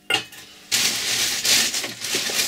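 A short clink as a small brass cup is set down on a brass tray, then about two seconds of loud crackly rustling from an orange plastic carrier bag being rummaged through.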